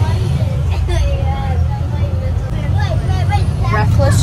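School bus engine running, a steady low rumble heard from inside the bus, with passengers chattering over it.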